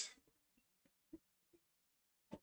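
Near silence: room tone, with a couple of faint short clicks.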